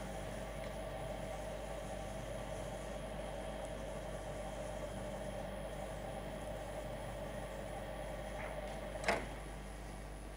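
Vertical sliding chalkboard panels being moved along their runners, a steady rolling noise that ends with a single sharp knock about nine seconds in as a panel comes to its stop.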